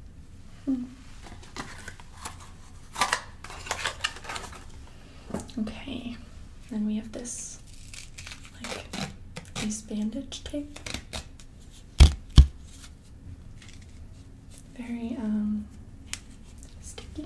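Gauze and a tan elastic bandage roll handled and unrolled, giving crinkling, rustling and soft tearing sounds. Two sharp clicks come close together about twelve seconds in. Short soft vocal sounds fall in between.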